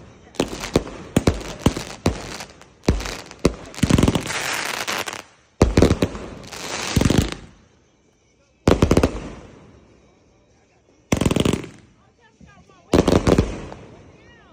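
Ghost 200-shot consumer fireworks cake firing: rapid volleys of launches and aerial bursts, some running into longer noisy stretches. A short lull comes about eight seconds in, then single shots every couple of seconds.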